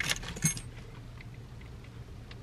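Small plastic clicks and rattles from handling a car accessory and its packaging, with a few sharp clicks in the first half-second and faint ticks after, over a low steady hum.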